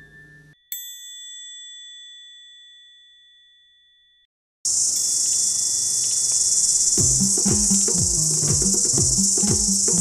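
A single bell-like chime rings just under a second in and fades away over about three seconds. About halfway through, a loud, steady, high-pitched insect chorus starts abruptly, and music with a low repeating beat joins it about seven seconds in.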